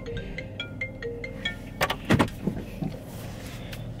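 Mobile phone ringtone playing a short chiming melody of quick notes, which stops about a second and a half in; a couple of sharp knocks follow about two seconds in.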